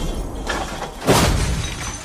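Glass shattering in a crash sound effect: a sudden hit about a second in that dies away, over the fading end of a trap beat.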